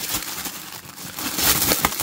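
Cellophane wrapping crinkling and crackling as hands peel it off a small circuit board, irregular and somewhat louder in the second half.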